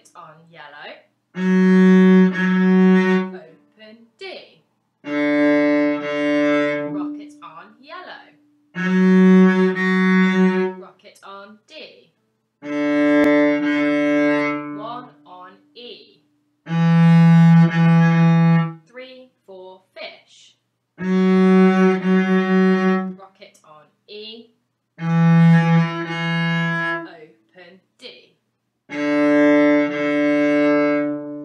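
Cello played with the bow on the D string: a warm-up of long notes, each about two seconds, one every four seconds or so with rests between, moving back and forth between the open D and a higher stopped note on the same string.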